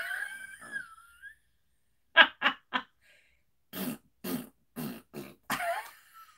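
A woman laughing: the end of a laugh fades out, then three quick voiced 'ha' bursts come about two seconds in, followed by a run of breathy, cough-like bursts about two a second.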